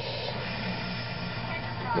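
Steady room tone: a low electrical hum with light hiss and no distinct event.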